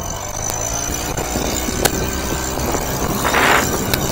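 Small Suzuki four-stroke kicker outboard running under throttle, its level climbing steadily, with a couple of sharp clicks. Given gas, the motor pops up because the latch that should stop it from tilting is missing.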